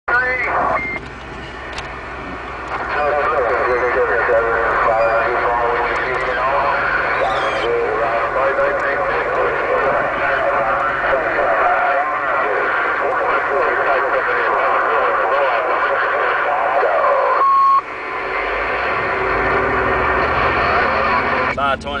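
Distant voices coming through the speaker of a Uniden HR2510 10-meter radio over static, warbling and too garbled to make out. A short steady beep tone sounds near the end, and the signal drops out just after it.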